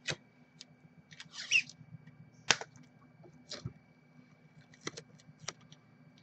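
Kapton tape being wrapped by hand around a phone circuit board: scattered soft clicks and a brief crinkle of the tape, with one sharper click about two and a half seconds in.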